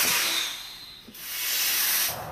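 Two hissing whooshes, an editing transition sound effect: the first fades away over about a second, and the second swells up from about halfway through and stops sharply at the end.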